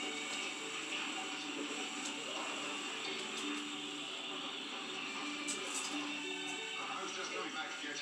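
Television programme playing: music with voices over it.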